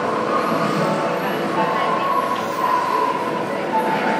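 Steady murmur of a crowd's indistinct chatter, with faint held tones running through it.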